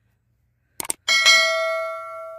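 Subscribe-button overlay sound effect: a quick double mouse click a little under a second in, then a bright bell ding about a second in that rings on and slowly fades.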